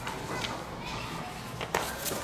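Background chatter of children's voices, with a couple of short sharp clicks of paper being handled, the loudest near the end.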